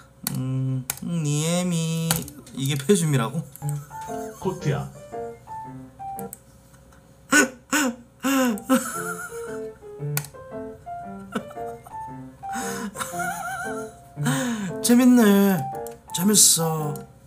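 Stream donation-alert sound clips playing one after another: short snatches of voices and music, including a simple tune of short notes.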